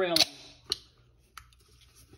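The tail of a spoken word, then a sharp click and two lighter knocks, about half a second apart, as drink-making items are handled on the kitchen counter while ginger ale is readied.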